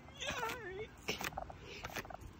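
A person's wordless, wavering vocal cry that slides up and down in pitch for under a second, followed by a couple of short clicks.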